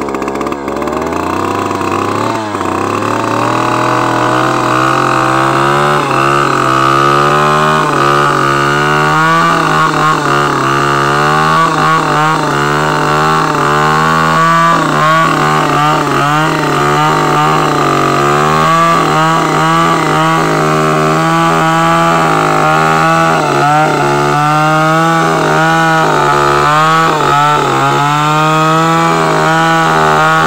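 Two-stroke chainsaw running hard while cutting into the base of a dead tree trunk. Its revs climb over the first few seconds, then hold high and steady with a slight waver under load.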